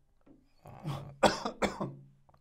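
A man coughing hard about four times in quick succession into his fist, starting just under a second in.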